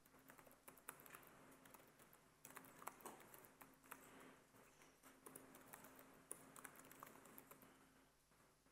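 Faint typing on a computer keyboard: irregular key clicks as a command is typed.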